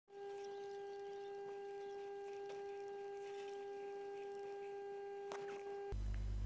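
Steady electrical hum at one mid pitch with its overtones, in the recording's audio chain, with a few faint clicks; it stops abruptly just before the end.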